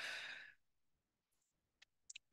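A short breath into a close microphone, lasting about half a second, then near silence with a faint click near the end.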